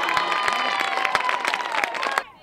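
Crowd cheering and applauding at a softball game: many sharp hand claps over a mass of high shouting voices, steady and loud throughout.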